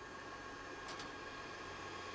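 Faint steady hiss with a low hum and a faint high tone underneath.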